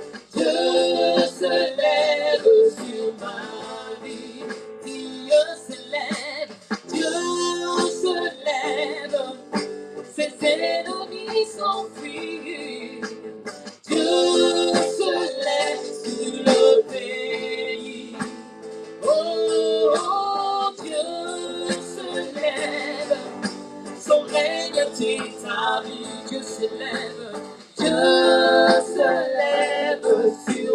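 Live worship song: a woman sings lead into a microphone, with backing singers and instrumental accompaniment, in continuous sung phrases.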